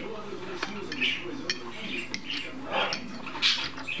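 Metal fork clicking and scraping on a ceramic plate as pieces of sautéed mushroom are picked up, with a few light clicks spread through.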